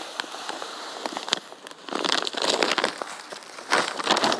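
Plastic bait bags crinkling and rustling as a dry groundbait mix is tipped into a bucket, with many small irregular crackles in clusters.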